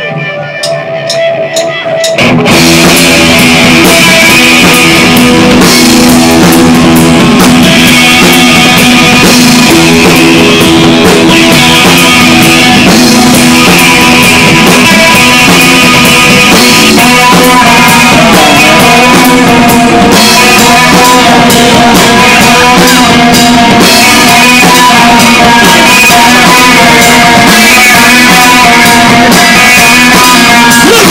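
A few quick, evenly spaced clicks, then a live rock band comes in about two seconds in with drum kit and electric guitars, playing very loud and steady.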